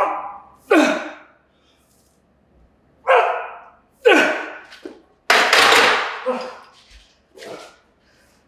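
A weightlifter's loud, strained grunts and forced exhalations, one roughly every second, as he works through the last heavy reps of barbell Romanian deadlifts. A longer hissing exhale comes a little past the middle.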